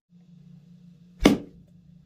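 A steady low hum, with a single short whoosh a little over a second in. The whoosh is an editing sound effect accompanying a title card.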